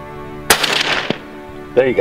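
A single rifle shot about half a second in: one sharp crack with a short fading tail, over quiet background music.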